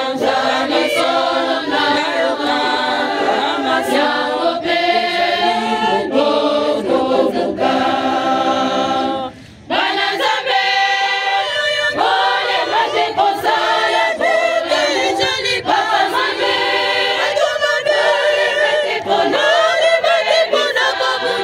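Choir of women's and men's voices singing unaccompanied, with a short break in the song about halfway through.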